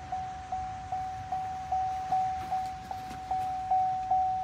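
A 2007 Chevrolet Suburban's door-open warning chime, one single-pitched ding repeating about two and a half times a second, each ding dying away before the next, sounding because the doors stand open.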